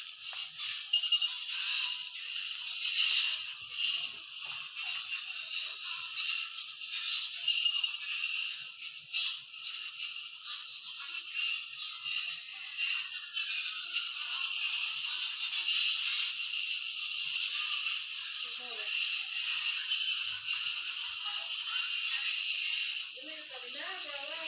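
A dense, tinny jumble of many cartoon soundtracks playing over one another at once, sped up, with voices and music smeared together and almost no bass.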